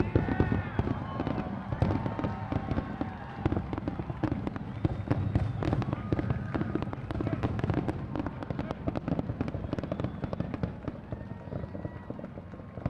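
Aerial fireworks display: a dense, continuous run of shell bursts and crackles, many per second, easing a little near the end.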